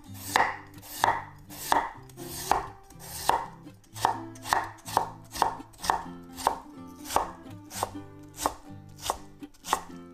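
Kitchen knife cutting raw potato on a wooden cutting board: crisp, regular knife strokes, about one every 0.7 s at first, quickening to about two a second from around four seconds in as the potato is cut into matchsticks and minced.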